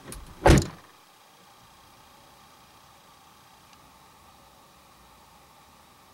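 A car side door being shut. A light knock comes first, then one solid slam about half a second in.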